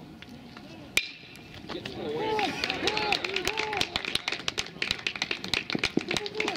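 A baseball bat hits a pitched ball with one sharp hit about a second in. Voices then shout, with scattered clapping, as the ball is put in play.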